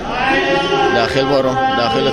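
A man's voice chanting in long held notes that bend in pitch, one phrase following another.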